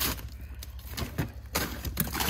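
Frozen food packages being shifted around in a chest freezer: plastic bags and a cardboard box rustling and knocking, with a few light clicks and a rougher stretch of rustling in the second half.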